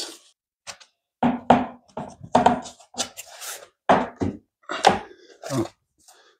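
Laminate floor plank being worked down and pressed into the click-lock joint of the neighbouring board: a string of short knocks and thunks of the boards against each other, starting about a second in.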